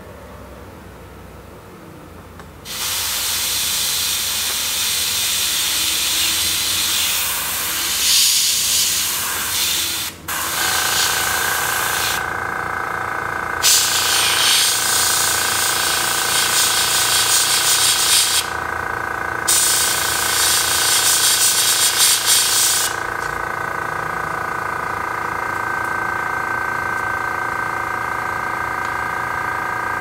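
Airbrush spraying paint in long hissing passes, with two short pauses. An air compressor starts about ten seconds in and runs with a steady whine.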